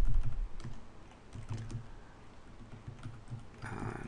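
Computer keyboard being typed on, short runs of key clicks as a terminal command is entered, with a low rumble in the first moment.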